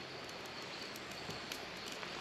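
Quiet outdoor background: a steady soft hiss with a few faint high ticks.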